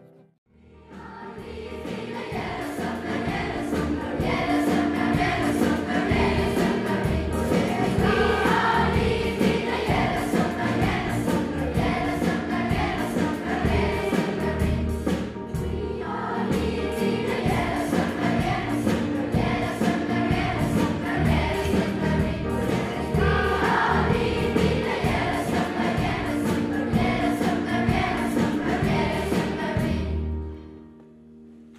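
A large choir of young voices singing with a live band behind them, over a steady beat. The music fades in over the first few seconds and drops away at the very end.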